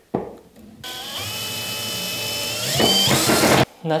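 Electric drill fixing a new plug socket to the wall: it runs with a steady whine for about three seconds, rises in pitch near the end, then stops suddenly.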